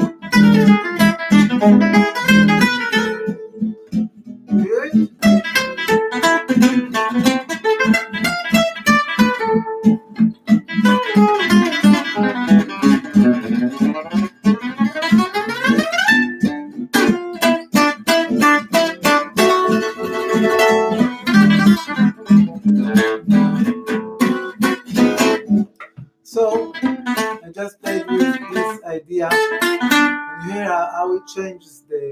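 Oval-hole gypsy jazz acoustic guitar played with a pick: fast single-note arpeggio runs and phrases with short breaks between them.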